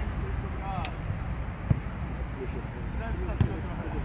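Outdoor football match from the sideline: faint distant shouting of players over steady background noise, with two sharp thuds of the ball being kicked, about a second and a half apart.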